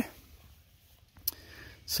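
Quiet pause with faint background hiss, broken by one short sharp click about a second and a quarter in, then a quick intake of breath just before speech resumes.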